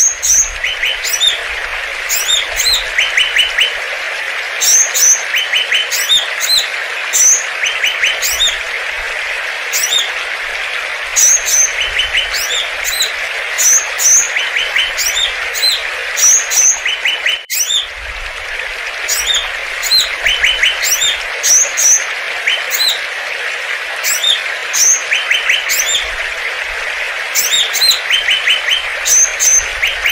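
A chorus of songbirds chirping, with rapid trills and high chirps repeating every second or two over a steady hiss, and a brief break about seventeen seconds in.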